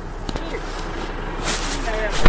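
Inside a car cabin: a steady low hum under faint voices, with a brief rustle about a second and a half in.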